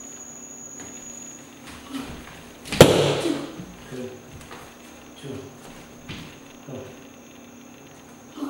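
A single sharp slap of a kick striking a handheld kick pad, about three seconds in, ringing briefly in the bare room. A few faint short voice sounds come before and after it.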